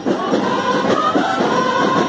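Many voices singing a hymn together, with no break.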